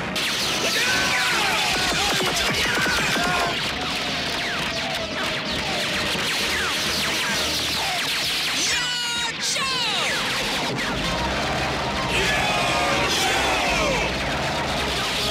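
Animated-battle soundtrack: action music under a rapid stream of laser-blaster zaps, heard as many quick sweeping shots, with crashes mixed in.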